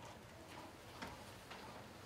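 A few faint, light clicks or knocks, about a second in and again half a second later, over quiet room tone.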